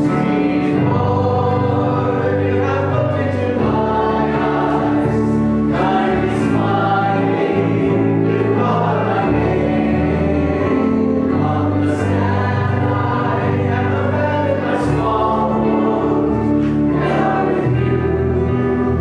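Congregation and a small worship band singing a hymn together, with keyboard accompaniment and a bass line that moves to a new note every couple of seconds.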